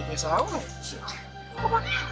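A person's voice, with gliding rises and falls in pitch, over background music carried by a steady low bass line.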